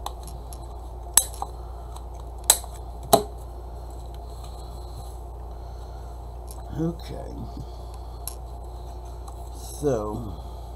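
Paper-crafting at a table: three sharp clicks in the first few seconds as tools and paper pieces are handled, over a steady low hum. A brief murmured voice sound comes later, and a spoken word near the end.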